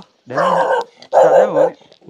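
A dog barking twice, each bark about half a second long.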